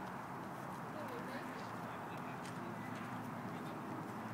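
Quiet outdoor background noise: a steady low hiss with only faint, indistinct sounds in it.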